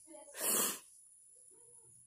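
A woman crying: one sharp, wheezy intake of breath about half a second in, a sob-like gasp or sniff.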